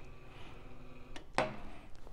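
Faint steady hum of a small electric linear actuator's motor and gearing running, cutting off a little over a second in, followed by a single sharp click.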